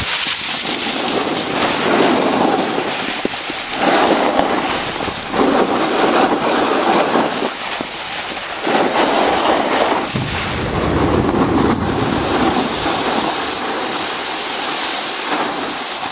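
Skis sliding and scraping over packed snow: a steady hiss that swells and fades every second or two with the turns, with a low wind rumble on the microphone for a few seconds past the middle.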